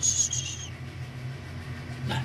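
A brief 'shh' hushing, then a steady low mechanical rumble, put down to the upstairs neighbours' washing machine on a fast spin.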